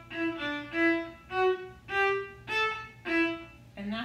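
Viola played with the bow: a short phrase of about seven detached staccato notes, each one stopped cleanly with no accent.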